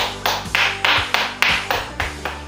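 Quick, even hand clapping, about three claps a second, over background music.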